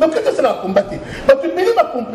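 Speech: a person talking with chuckling laughter mixed in.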